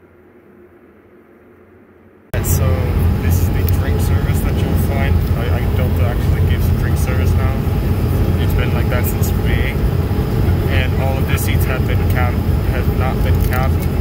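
Airliner cabin noise in flight: the loud, steady, deep drone of an Airbus A220's engines and airflow, with passengers' voices talking over it and a few light clicks. It cuts in suddenly about two seconds in, after a much quieter stretch.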